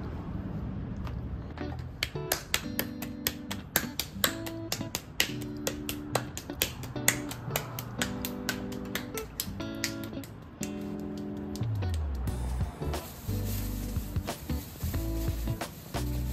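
Background music: a light track with a steady beat of snapping clicks and short plucked chords. A deeper bass line comes in about three quarters of the way through.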